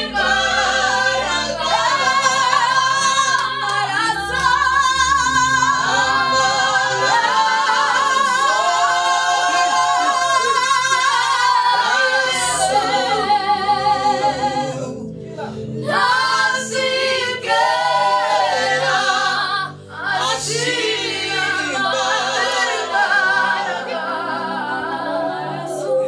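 A small mixed vocal group of women and one man singing a gospel song together in harmony, their voices wavering with vibrato. The singing thins out briefly about midway and again a few seconds later.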